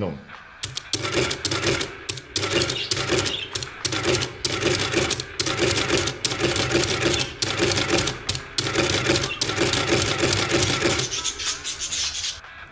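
Rapid, dense mechanical clattering over a pulsing hum. It starts just under a second in and stops about a second before the end.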